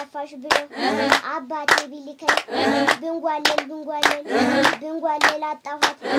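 Several people clapping hands in a steady beat, about one clap every 0.6 seconds, accompanying a young girl's singing voice between the claps.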